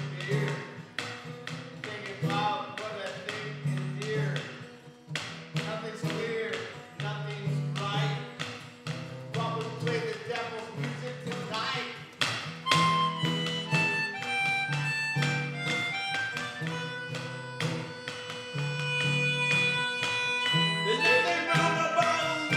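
Acoustic guitar strummed in a steady rhythm together with a melodica. From about halfway through, the melodica plays a melody of held notes stepping in pitch over the guitar.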